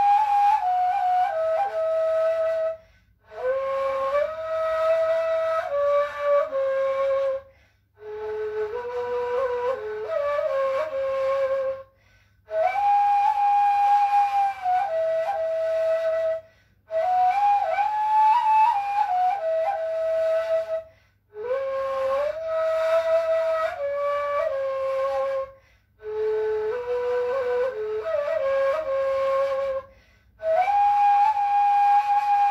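Solo ney, the Turkish end-blown reed flute, playing a slow hymn melody in makam segah. The tune moves stepwise in phrases of about four seconds, each broken off by a short pause for breath.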